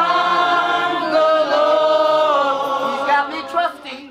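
A group of voices singing together in long, held notes; the singing tapers off just before the end.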